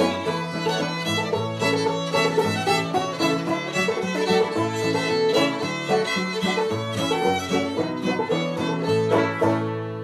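Old-time string band of fiddle, acoustic guitar and banjo playing an instrumental passage without singing. About nine and a half seconds in the playing stops on a last chord that rings on and fades.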